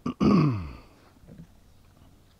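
A man's short wordless grunt, falling in pitch and lasting about half a second, just after a brief click.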